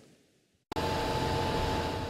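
Silence, then a steady mechanical hum with a few faint tones starts abruptly under a second in: a fire engine running in the street.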